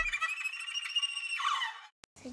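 The tail of an intro jingle: high, steady electronic tones with a short falling glide about one and a half seconds in, fading out just before the end.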